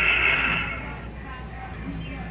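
A recorded scream from a talking Halloween animatronic prop, high-pitched, trailing off within the first second, then a quieter stretch with a low steady hum.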